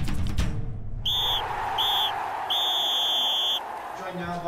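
Drum hits of a short intro music sting in the first half second, then a referee's whistle blown three times, two short blasts and one long one, the full-time signal in soccer, over a steady hiss.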